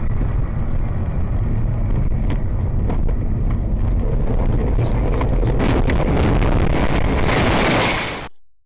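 Car driving on a snowy road, heard from inside the cabin through a dashcam: a steady low road and engine rumble. From about five seconds in come a run of knocks and a swelling rush of noise that is loudest near the end, as the car is thrown about.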